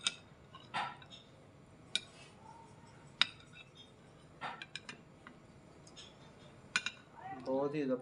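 Metal spoon clinking against a ceramic bowl while scooping food: about half a dozen separate sharp clinks spaced a second or so apart.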